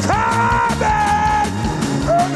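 Live gospel praise-band music with a steady drum and bass beat. A high note is held over it for about a second and a half, sliding in at the start and dropping slightly partway through.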